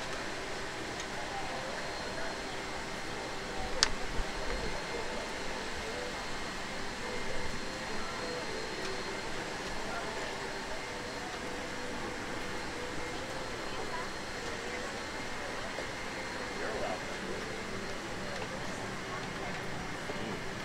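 Airliner cabin during boarding: the steady hiss of the cabin ventilation under the murmur of passengers talking, with a sharp click about four seconds in.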